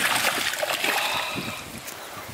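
Water splashing as a released Murray cod thrashes its tail and swims off from the river bank. The splash is strongest at the start and fades away over about a second and a half.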